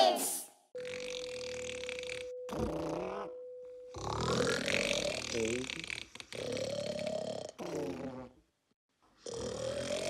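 Cartoon snoring from a sleeping character: a series of drawn-out, throaty snores of a second or two each, separated by short pauses. A steady tone sounds under the first three seconds.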